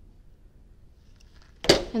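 Hotronix auto clam heat press being closed: near quiet as the handle is pulled down, then one sharp clunk about a second and a half in as the upper platen clamps shut on the bag for a quick pre-press.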